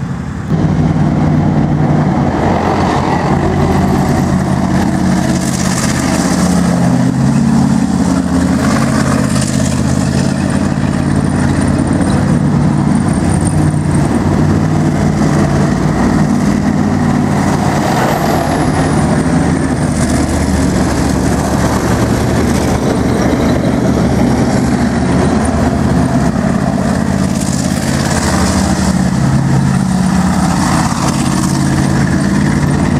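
Main battle tanks driving on a dirt course, with the loud, steady drone of a tank diesel engine; a Type 10 tank passes close by. A faint high whistle dips and rises again about eighteen seconds in.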